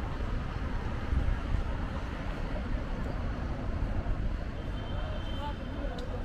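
Steady city traffic noise from cars and scooters in a busy square, mixed with indistinct voices of people talking.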